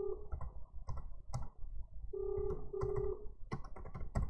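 Double-ring ringback tone of an outgoing phone call, ringing unanswered: a pair of short beeps with a brief gap between them, the pair recurring every few seconds. Computer keyboard typing and mouse clicks sound over it.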